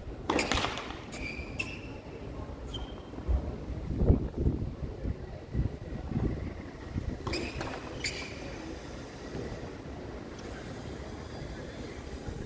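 Tennis balls struck by rackets and bouncing on a hard court, sharp pops with a brief ringing after some: several in the first three seconds, then two more around seven to eight seconds in. A low rumble swells about four seconds in.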